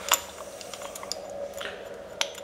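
Small clicks and taps of an electric water pump's terminal box cover being handled and fitted back on, with one sharper click just after the start.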